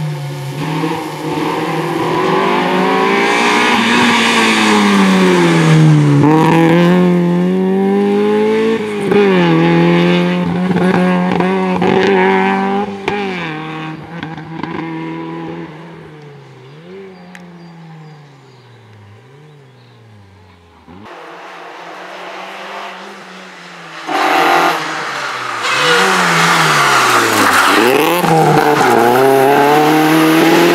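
Opel Kadett GSi rally car's four-cylinder engine at full throttle, its pitch climbing and dropping again and again through gear changes and lifts. It fades as the car pulls away around the middle, then comes back loud suddenly after a cut.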